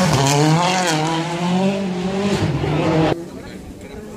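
A rally car's engine at high revs as it passes close by, its pitch rising and falling with the throttle. The sound cuts off abruptly about three seconds in.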